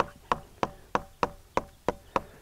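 Even, light tapping, about three taps a second with a short faint ring after each: the sharp cut edges of metal plumber strap being tapped down flat against a wooden hip purlin.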